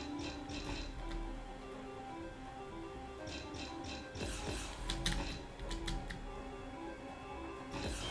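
Online slot game John Hunter and the Book of Tut Respin: its background music runs steadily while the reels spin, with a scattering of short clicks as the reels stop and land.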